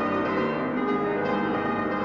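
Solo piano playing, with many held notes ringing over one another in chords and melody.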